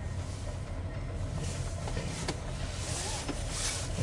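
VIA Rail passenger coaches rolling across a steel trestle bridge. A steady low rumble runs underneath a hiss that swells and fades, with a few brief clicks.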